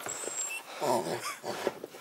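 A shepherd-type dog makes short throaty vocal sounds, loudest about a second in.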